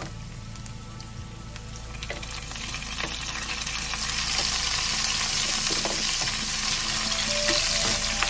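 Chicken wings and ginger frying in hot black sesame oil in a frying pan. The sizzle swells from about two seconds in as the wings go back into the pan, with a few light knocks of tongs.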